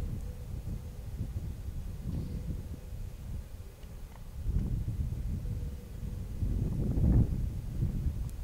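Wind buffeting the microphone: a gusty low rumble that swells about halfway through and again near the end.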